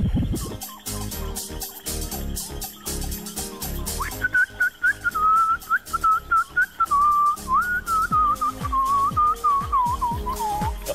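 A tune whistled over light background music with a steady beat; the whistling comes in about four seconds in.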